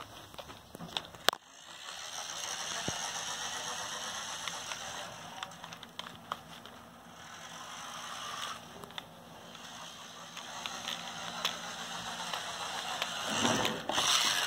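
New Bright 1/24 scale toy RC truck's small electric motor and plastic gears whirring as it drives over carpet, running on and off with a lull in the middle and louder again near the end. A sharp click about a second in.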